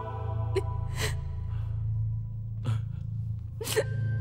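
A woman crying in four short, sharp gasping sobs, the last and loudest near the end. Slow background music with held chords and a low drone plays under them.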